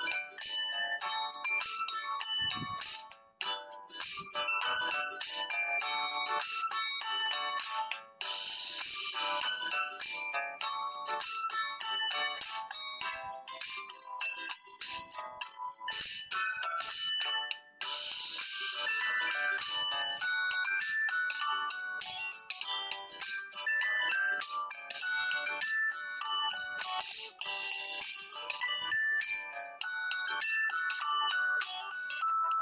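Background instrumental music: a quick tune of short, bright notes, with brief breaks about 3, 8 and 17 seconds in.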